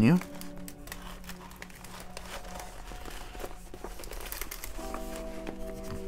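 Crinkling and rustling of a diamond painting canvas and its plastic cover film as it is rolled backwards by hand, a scatter of small crackles. Soft background music runs underneath and gets louder near the end.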